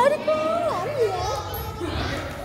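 A young child's high voice calling out in short phrases that rise and fall in pitch, without clear words, amid children playing.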